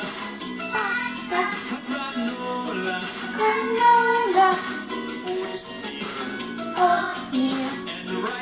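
Music: a children's song sung over an instrumental accompaniment.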